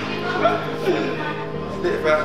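Background music with steady held notes, under a man's voice laughing and calling out in short wavering cries.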